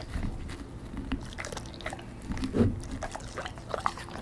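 German Shepherd eating pizza close to the microphone, licking and chewing with irregular wet mouth clicks and smacks; the loudest smack comes about two and a half seconds in.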